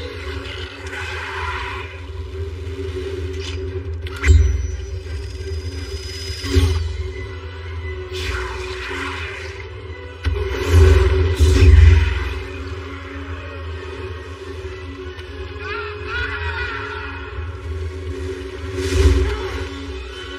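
Film soundtrack mix: dark music over a steady low rumble, cut through by sudden loud booming hits and whooshes of a fight. The hits come about four seconds in, at six and a half seconds, twice close together around eleven to twelve seconds, and once more near the end.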